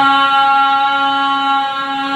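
A man's singing voice holding one long, steady note in a Telugu folk ballad recitation.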